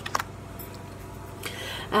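Tarot cards set down on a cloth-covered table: a couple of light clicks about a tenth of a second in, otherwise quiet handling.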